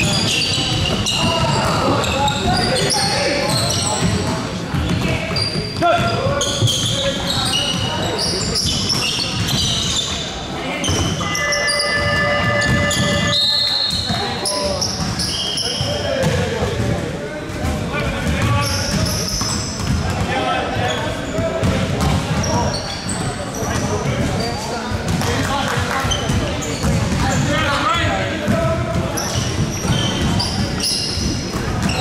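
A basketball game on a hardwood gym floor: the ball bouncing amid players' voices calling out, in a large hall. Near the middle a steady pitched tone sounds for about two seconds.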